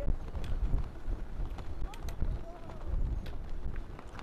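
Wind rumbling and buffeting on the microphone, with faint, indistinct voices of people nearby and scattered sharp clicks.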